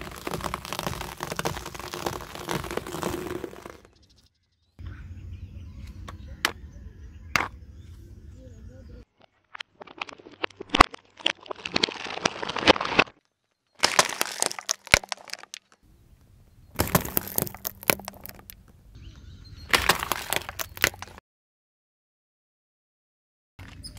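Car tyre rolling over and crushing food on asphalt: crackling and crunching in several separate stretches, with sharp cracks and short silent breaks between them. Puffed-rice balls crunch under the tread, and raw eggs in a plastic egg tray crack and burst.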